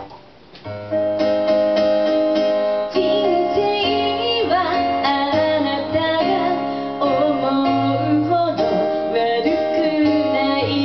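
A female vocalist sings live over electric keyboard accompaniment. The music drops away briefly at the start and comes back in about a second in, with the voice entering around three seconds in.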